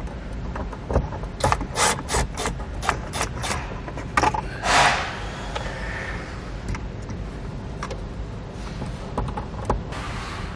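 Clicks and knocks of a plastic overhead-console trim panel and a cordless Milwaukee FUEL driver as small star-bit screws are backed out, with one short rasping scrape about halfway through.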